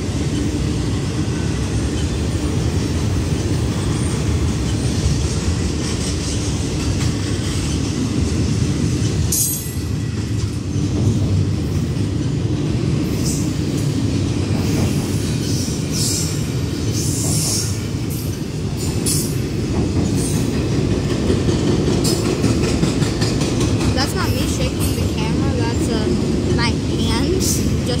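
Norfolk Southern intermodal freight train's double-stack well cars rolling past close by: a steady, loud rumble of steel wheels on rail, with scattered short clanks and high wheel squeals through the middle.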